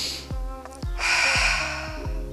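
A woman's deliberate deep breath, heard as a hiss of air for under a second about midway, as she demonstrates belly breathing. Background music with a regular thudding beat plays throughout.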